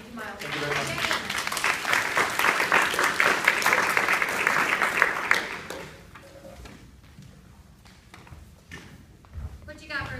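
A group of people applauding, building quickly, holding for a few seconds and dying away about six seconds in, with voices talking under and after it.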